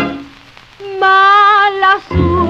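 Bolero played from a 78 rpm shellac record: a band phrase ends, there is a short near-quiet gap with surface noise, then a single note is held with vibrato for about a second before the vocal comes in.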